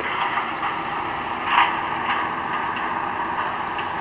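Steady outdoor background noise, an even hiss with no clear rhythm, and one brief faint sound about one and a half seconds in.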